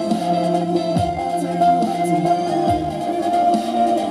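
Dubstep played live by a DJ through stage speakers: a held synth tone over deep bass notes that fall steeply in pitch, twice, on a slow regular cycle.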